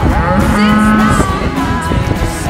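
Beef cattle mooing, with one long, steady moo in the first second.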